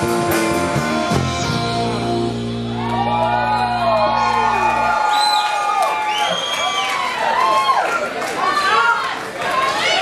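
A rock band finishes a song: electric guitar and bass hold a final chord that cuts off about five seconds in, while the audience cheers and whoops.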